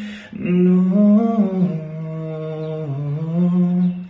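A man singing a slow melody without words, humming long held notes. He takes a short breath at the start, and the notes slide gently down and back up.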